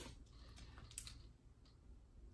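Near silence, with a faint click about a second in and a few softer ticks from handling a trading card and its plastic sleeve.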